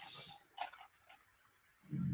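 A man's faint intake of breath, then near the end a short, low throat-clearing cough.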